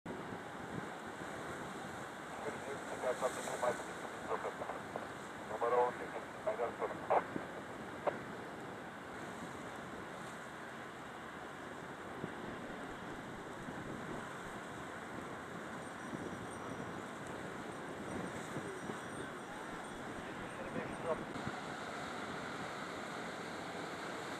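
Steady outdoor wind noise on the microphone mixed with small waves washing against a rock breakwater, with indistinct voices a few seconds in and again briefly near the end.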